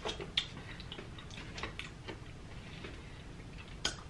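Faint, scattered mouth clicks and lip smacks from a person tasting a sip of thick milkshake, with a small chunk of bacon in the mouth.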